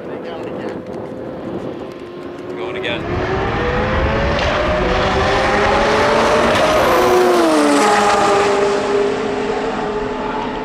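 Two street cars, one a green McLaren 720S, accelerating hard side by side in a roll race. Their engine notes climb in pitch and grow louder from about three seconds in, then drop in pitch around seven seconds in as the cars pass by and pull away.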